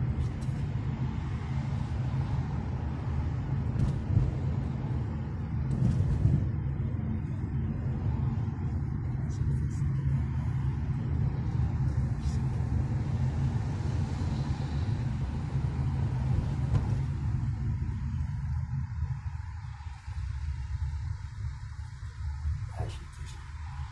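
Steady low engine and road rumble of a car moving in slow traffic, heard from inside the cabin, with a few light clicks; the rumble eases a little near the end.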